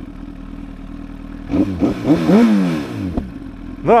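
Honda CBR1000RR inline-four engine idling, with one throttle blip about a second and a half in that rises and falls back to idle.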